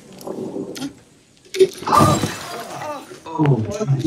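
A sudden smash of breaking glass about one and a half seconds in, followed by voices.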